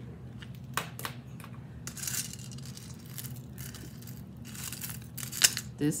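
Costume jewelry being handled on a marble tabletop: scattered light clicks and a brief metallic rustle as a gold-tone heart-link bracelet is picked up. The sharpest click comes a little before the end, over a steady low hum.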